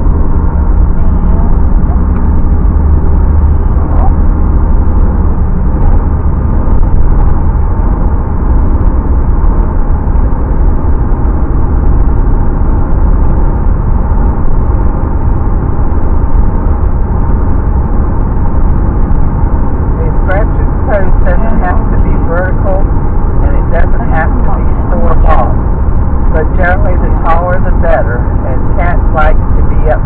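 Steady low rumble of car noise heard inside the cabin. A voice starts talking about two-thirds of the way through.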